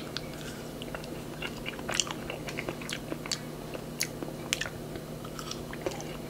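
A bite into a frozen melon Melona ice cream bar right at the start, then chewing and mouth sounds heard as many small scattered clicks.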